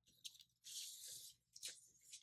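Faint scratchy stroke of a white Uni-ball Signal gel pen drawn across a clear plastic sticker, lasting under a second, with a few soft taps of the pen and hands around it.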